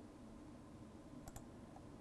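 Near silence: room tone, with a faint double click of a computer mouse button about a second in.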